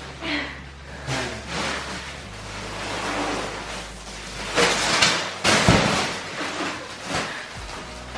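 Thin plastic wrapping crinkling and rustling as it is pulled and torn off a rolled, vacuum-packed mattress, loudest about halfway through, with a dull thud in the middle of it.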